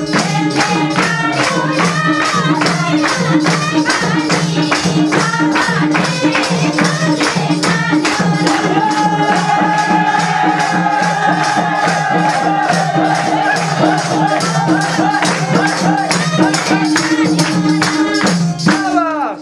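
Nepali folk song (lok geet) with singing over a steady, even percussion beat and a held low drone.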